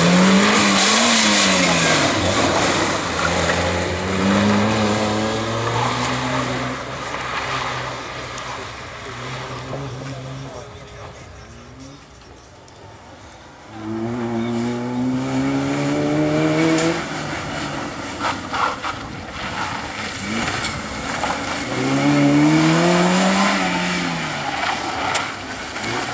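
Small Suzuki Swift hatchback's engine being driven hard through a tight slalom, revving up and dropping back over and over between turns. It goes quieter for a few seconds about halfway through, then pulls hard again.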